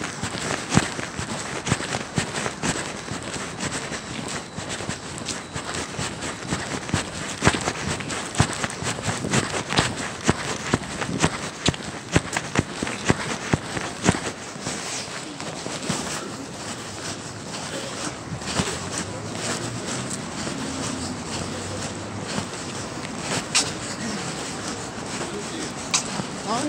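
Footsteps of someone walking on a city pavement, with irregular knocks of a handheld camera, over steady street noise and snatches of voices.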